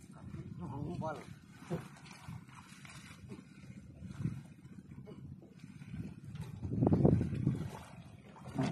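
A person's voice, calling out with a rising pitch about a second in, then short sounds from the voice at intervals. About seven seconds in comes a loud, low rumbling noise lasting about a second.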